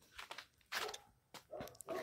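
A dog making a few faint, short sounds, with brief pauses between them.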